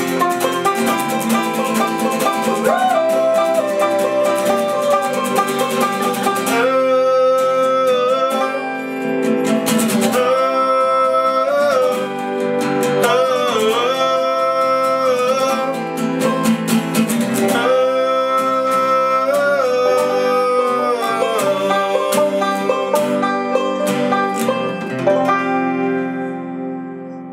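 Acoustic guitar strummed and banjo picked together in a live folk-rock song, with male singing that becomes fuller about six seconds in.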